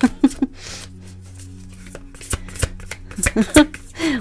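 Brief laughter, then a deck of tarot cards being handled and shuffled by hand. In the second half comes a quick, irregular run of sharp card snaps and taps.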